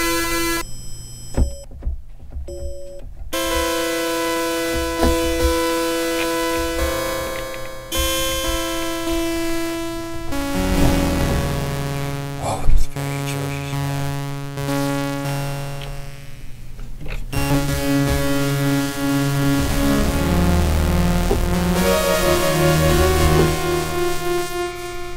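Waldorf Iridium synthesizer in Kernel phase-FM mode sounding sustained notes rich in overtones, their tone changing as the kernel feedback is raised. A sharp click comes about halfway through, and near the end the notes repeat quickly in a pattern.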